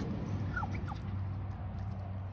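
Domestic turkeys feeding at a steel bowl, with two or three short, high calls that fall in pitch about half a second in.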